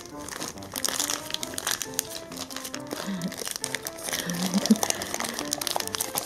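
Thin plastic bag crinkling and rustling as pink craft dough is squeezed and kneaded inside it by hand, over soft background music.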